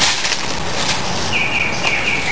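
Dry broom bristles rustling as the broom is handled, then a bird calling three short, high, level-pitched notes in the second half.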